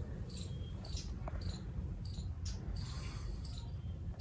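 Insects chirping outdoors: short, high chirps repeating unevenly, one or two a second, over a steady low rumble.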